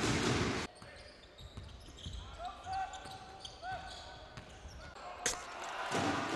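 Basketball arena game sound: crowd noise with the ball bouncing on the court. It cuts off abruptly less than a second in, leaving a quiet stretch with a few faint short squeaks. Near the end comes a sharp bang, and the loud arena noise returns.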